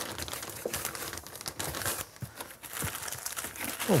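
A plastic anti-static bag and the bagged accessories in a motherboard box crinkling and rustling continuously as they are handled, a dense irregular crackle.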